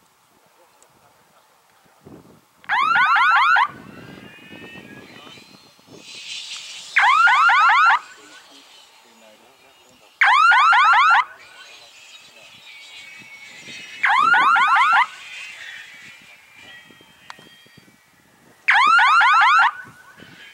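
Electronic base-crossing signal of an F3B speed-task timing system sounding five times, about every four seconds. Each is a loud warbling siren-like tone about a second long. The five signals mark the glider entering the course and completing each of its four 150 m legs.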